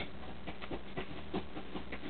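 A pet cat playing with a bag: faint, irregular rustling and scratching.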